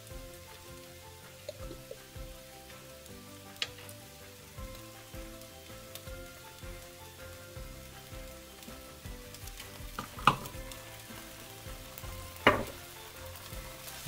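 Rice and vegetables frying in a sesame-oiled skillet on medium heat, a faint steady sizzle. A few sharp clicks break through, the loudest about ten and twelve and a half seconds in.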